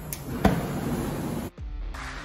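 A gas cutting torch hissing, with a sharp pop about half a second in as it is lit. About a second and a half in it cuts abruptly to background electronic music.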